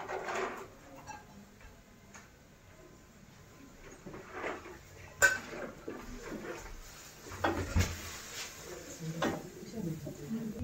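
Stainless steel cookware being handled, with a wooden spoon stirring in a metal frying pan: scattered knocks and clatter, the loudest a sharp clank about five seconds in.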